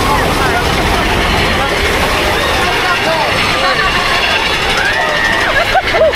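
Mine-train roller coaster running along its track, a steady heavy rumble with wind on the microphone, and riders' voices and drawn-out yells over it, more of them near the end.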